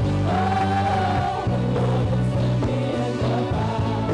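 Live worship band playing with several women singing into microphones, backed by keyboards, bass and drums; a high sung note is held for about a second early on.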